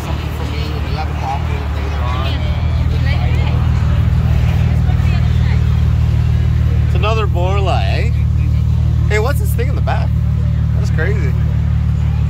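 Plymouth Prowler's 3.5-litre V6 idling steadily through its exhaust, a low, even engine note. Voices of people talking can be heard briefly over it about two-thirds of the way in.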